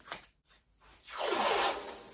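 Blue painter's tape being pulled off its roll in one long ripping pull starting about a second in, after a brief shorter rip at the start.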